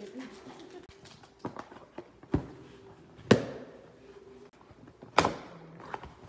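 Packing tape on a cardboard box being punctured and ripped open with a ballpoint pen: several sharp cracks and tears, the loudest two about three and five seconds in.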